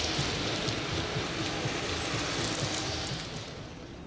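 Mercedes police vans driving past: a steady rush of engine and tyre noise that fades away about three seconds in.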